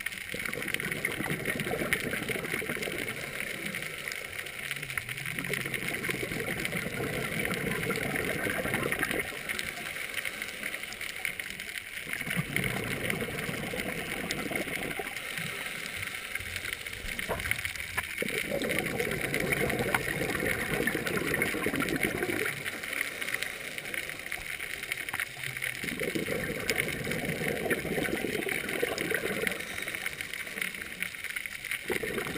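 Scuba breathing heard underwater: exhaled bubbles from a regulator gurgle in bursts a few seconds long, one roughly every six seconds, over a steady hiss.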